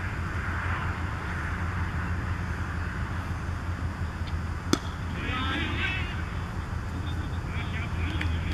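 One sharp crack of a cricket bat striking the ball just after the halfway point, over a steady low hum, with faint distant voices shortly after.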